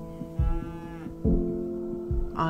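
A dairy cow mooing once, briefly, its call dropping in pitch at the end, over background music with sustained low notes.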